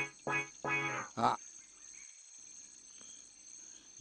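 A man laughing briefly in four quick, evenly spaced bursts. After that it is quiet except for a faint, steady high chirring of crickets or other insects.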